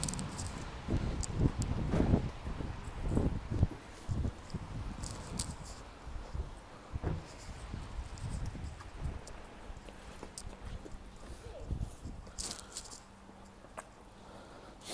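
Footsteps on wet paving slabs, an irregular run of soft thuds that is louder for the first few seconds and then fainter, with a few light clicks.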